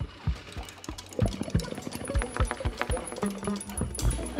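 The opening of an instrumental jazz-rock big band piece: a fast, even run of short struck or plucked notes over low bass notes, building in level.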